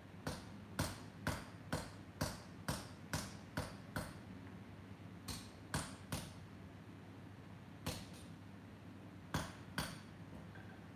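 Blacksmith's hand hammer striking metal on an anvil, forging by hand. A steady run of about nine blows, roughly two a second, then after a pause a few shorter groups of strikes.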